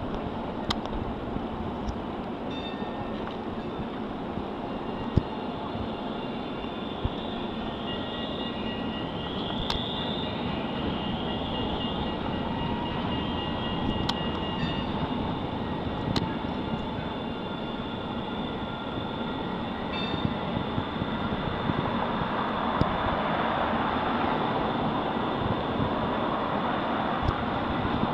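Steady rumble of passing vehicles, with faint high squealing tones through the first half and a few sharp ticks. The sound swells somewhat louder over the last several seconds.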